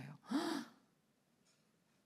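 A woman's short, sharp gasp, "heh!", acted out as a gasp of shock about a third of a second in.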